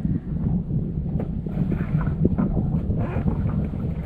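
Steady low rumble of wind buffeting the microphone aboard a small boat, with a few light knocks.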